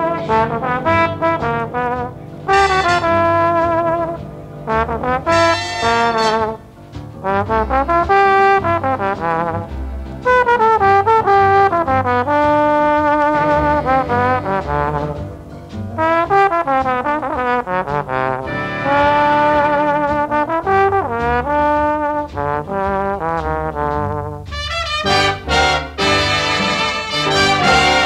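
Instrumental break of a swing big-band record: trombones and trumpets play held, vibrato-laden lines and riffs over a steady bass and drum rhythm, with no singing.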